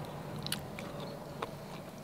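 Faint mouth sounds of a person biting into and chewing a slice of soft, ripe mamey sapote, with a few small wet clicks.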